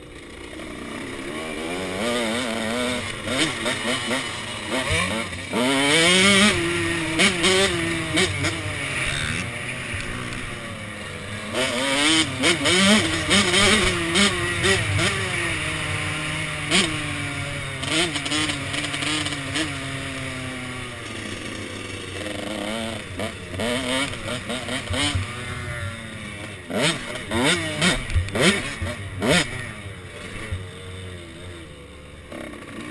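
KTM SX 105 two-stroke motocross bike engine revving up and down through the gears under hard riding, its pitch rising and falling again and again. Wind buffets the helmet microphone in frequent gusts.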